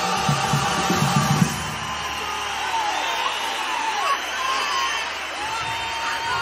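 A carnival choir with guitars holds its final chord over a low beat, which ends about a second and a half in; the audience then cheers and whoops.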